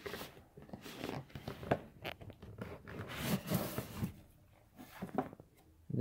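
Cardboard gift box and its paper packaging being handled and opened by hand: irregular rustling and scraping, with a longer scrape about three to four seconds in.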